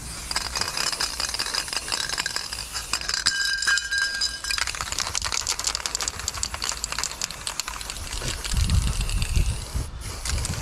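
Aerosol spray-paint can spraying onto a cinder-block wall: a continuous hiss with a fast rattling clicking from the mixing ball as the can is moved, and a brief thin whistle from the nozzle a few seconds in. A low rumble near the end.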